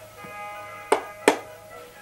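Music with faint held notes playing from a Wallace & Gromit talking alarm clock between its recorded voice lines, with two sharp clicks about a second in, less than half a second apart.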